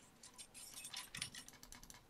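Faint, rapid clicking of a computer mouse and keyboard being worked, a quick irregular run of small clicks.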